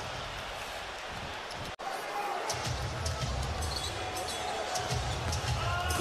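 Arena crowd noise during a basketball game, with the ball bouncing on the hardwood court. The sound drops out suddenly for an instant just under two seconds in, at an edit cut.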